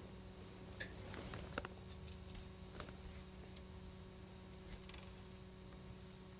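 Faint, scattered small metallic clicks as washers and nuts are fitted by hand onto the carburetor's mounting studs, over a low steady hum.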